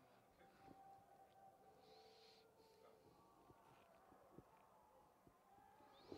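Near silence: faint open-air ambience, with a small faint tick about four seconds in.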